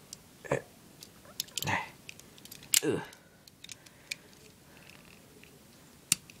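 Leatherman multitool being handled and opened: one sharp metallic snap about three seconds in, with a few light clicks around it, as the pliers are unfolded.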